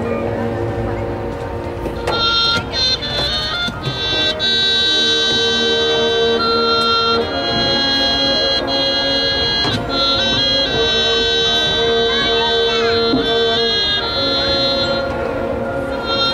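High school marching band's wind section playing slow, long-held chords. Higher parts come in about two seconds in, and the chords hold on sustained notes with only brief changes between them.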